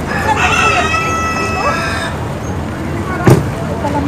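An animal's long drawn-out call lasting nearly two seconds, over steady outdoor background noise, followed by a sharp knock about three seconds in.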